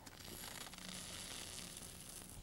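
Faint hiss of water spraying from a pop-up sprinkler head as the newly installed circuit is first turned on and the head rises under water pressure.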